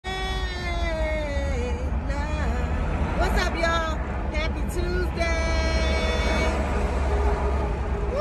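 A woman's voice singing, with long held notes and pitch glides, over the steady low rumble of a car on the move, heard inside the cabin.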